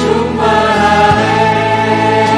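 A choir singing a Korean worship song with instrumental accompaniment, in long held notes that move to a new chord partway through.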